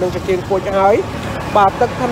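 A man talking in a continuous commentary, with a short pause just after the middle, over a faint low steady hum.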